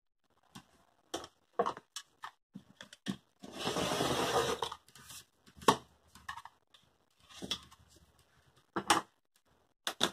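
Rotary cutter drawn along an acrylic quilting ruler, slicing through cotton fabric on a cutting mat: one gritty cut about a second and a half long in the middle, with small clicks and knocks from the ruler and hands before and after.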